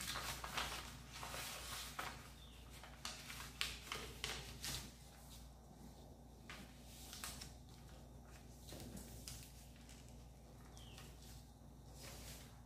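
Kraft pattern paper rustling and crinkling as hands fold and press a dart closed, with a string of short crackles in the first few seconds, then only faint handling.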